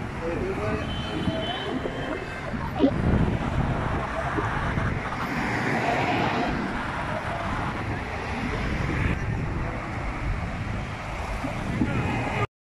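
Steady road traffic noise with wind buffeting the microphone and indistinct voices, and one sharp knock about three seconds in.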